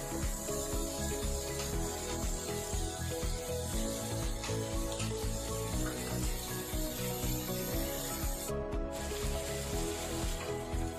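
Background music with a steady melody over shrimp sizzling in butter in a pan. A wooden spatula scrapes and rubs against the pan at the start.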